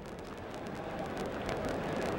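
Steady murmur of a ballpark crowd in the stands, a continuous hum of many distant voices with no single sound standing out.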